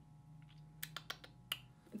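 Fingernails tapping on a smartphone touchscreen: about five faint, quick clicks a little under a second in.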